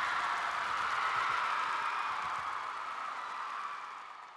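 A rushing noise that swells up and fades away over a few seconds, with no voice or tune in it.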